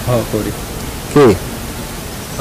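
A man speaking in short, broken phrases, with pauses filled by a steady background hiss.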